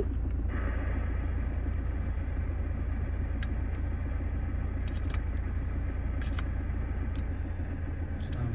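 Toyota Fortuner engine idling, a steady low rumble heard inside the cabin, with a few faint clicks over it.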